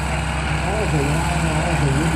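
Old dump truck's engine running slowly and steadily at low revs as the truck creeps forward, with voices talking over it.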